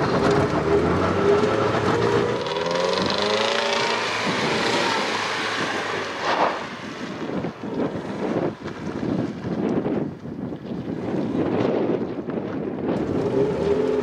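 Mercedes-Benz W124 engine revving hard as the car accelerates in reverse, heard from inside the cabin, its pitch climbing over the first five or six seconds. After that the engine is joined by rougher tyre and gravel noise as the car backs fast across loose ground.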